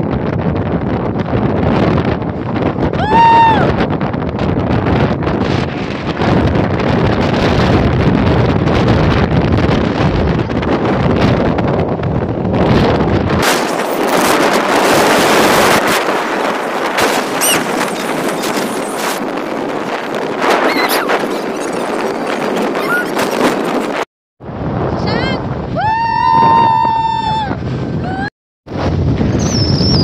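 Wind buffeting the microphone and the rush of a speedboat running fast over open sea. A person gives a short high cry about three seconds in and a longer held one near the end, and the sound cuts out briefly twice near the end.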